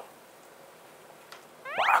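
Quiet room tone, then near the end a man's voice sweeping up into a high, drawn-out exclamation, the stretched start of "막~!".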